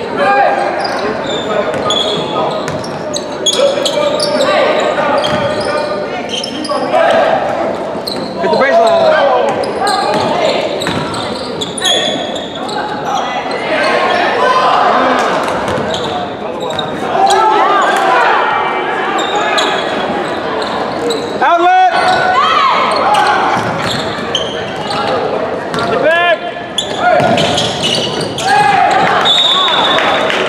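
Basketball game in a large gym: a ball bouncing on the hardwood court, sneakers squeaking in short rising chirps now and then, and voices of players and spectators echoing in the hall.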